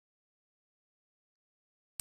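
Silence: the sound track is blank, with no sound at all until a sudden onset right at the end.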